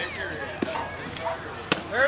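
Spectators' voices calling out and talking around a baseball diamond, with a sharp knock near the end.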